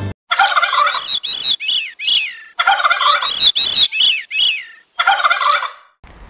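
Bird calls in three bouts, each a quick run of harsh, down-slurred notes, with the second bout the longest and loudest.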